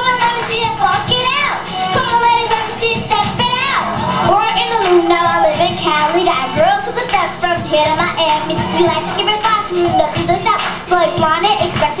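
A young girl rapping and singing into a microphone over a hip-hop backing track with a steady beat.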